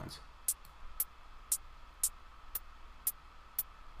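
Electronic hi-hat sample in Reaktor's Massive drum sequencer ticking in an even pattern, about two hits a second. A modulation lane shifts its pitch from step to step.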